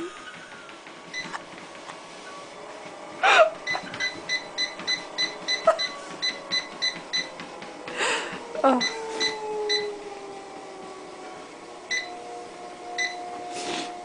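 Home treadmill's console giving a quick series of short electronic beeps, about three a second, then a few more scattered ones. Under them the treadmill motor's whine slides down in pitch and then holds steady.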